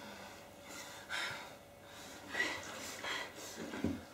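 A person breathing hard, with four short, sharp breaths about a second apart.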